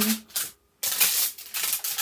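Clear plastic protective film on an adhesive diamond painting canvas crinkling as it is handled and smoothed back down, in two bursts, the second longer.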